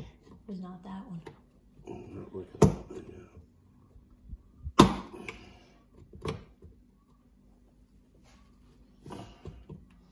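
A screwdriver and metal hand tools click and knock against a lawnmower's recoil starter pulley and housing. The clicks are sharp and scattered, and the loudest two come about two and a half and five seconds in.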